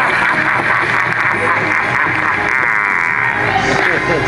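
Halloween clown animatronic playing its soundtrack through its built-in speaker: music with a wavering, distorted voice.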